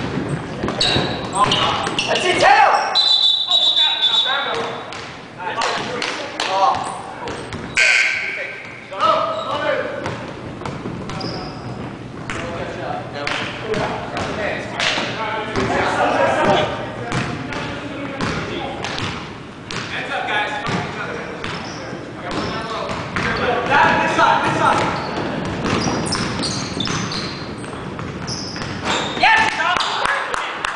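A basketball bouncing on a hardwood gym court, repeated sharp bounces, amid players' indistinct shouts, all echoing in a large hall.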